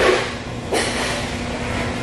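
Steady restaurant room noise with a constant low hum, broken by two short rushing noises, one at the start and one just under a second in.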